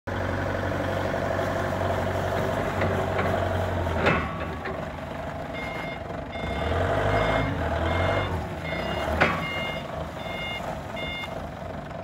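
Maximal FD30T forklift's diesel engine running as it drives over gravel, with two sharp knocks about four and nine seconds in. From about halfway, its reversing alarm beeps repeatedly as it backs up.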